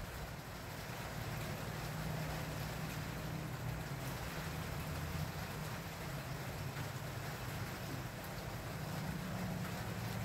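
Steady outdoor background noise: an even, soft hiss with a faint low hum beneath it and no distinct events.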